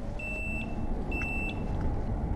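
Multimeter continuity tester beeping twice, each a steady high tone about half a second long: the meter finds a short between a mounting screw and a MOSFET's contact, where a snapped plastic insulating washer no longer insulates. A low rumble of wind and ride noise runs underneath.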